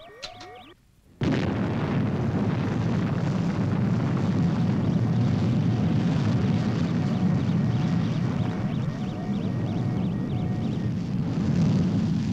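Rocket-launch sound effect: the missile's engine ignites suddenly about a second in and keeps firing as a loud, steady, low rushing roar.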